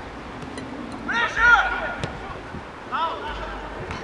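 People calling out over a steady outdoor background: a louder rise-and-fall shout about a second in and a shorter one near three seconds. There is a single sharp tap about two seconds in.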